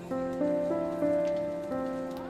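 Background film-score music: a slow piano melody, single notes struck about every third of a second to half second and left to fade.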